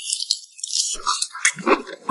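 A dry, high-pitched rattling of quick clicks that stops about one and a half seconds in, followed near the end by a brief grunt from a man eating.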